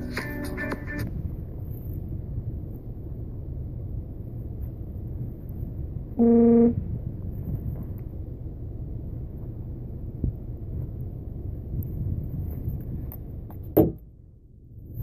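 Acoustic guitar music stops about a second in, leaving a steady low rumble of wind on the microphone. About six seconds in, one loud, steady half-second tone sounds once.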